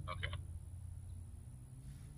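A brief pulsed animal call right at the start, over a steady low rumble.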